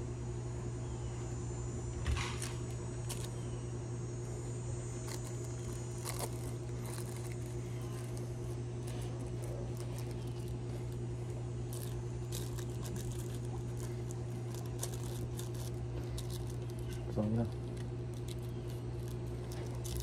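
Rolling paper being handled and folded between the fingers: light crinkles and ticks over a steady low hum.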